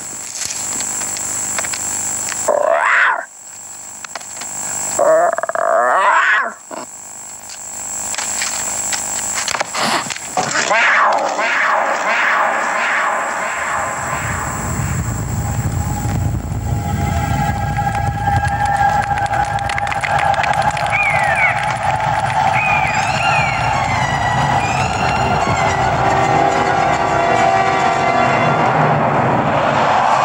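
Animated film soundtrack: a lion cub's small roars, a few short tries in the first several seconds, then a low rumble of a stampeding wildebeest herd that starts about a third of the way in and builds to stay loud, with the film's score over it.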